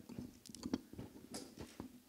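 Faint, indistinct off-microphone voices and a few soft knocks and clicks.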